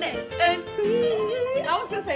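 Unaccompanied voices singing a melody, with a long wavering held note in the middle and notes climbing higher near the end.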